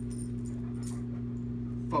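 A steady low electrical hum in the room, with a brief light metallic jingle of a dog's collar tags about a second in.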